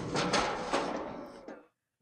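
Film soundtrack: soft knocks and a fading rustle from a metal kitchen cabinet as a boy shuts himself inside, dying away to silence about a second and a half in.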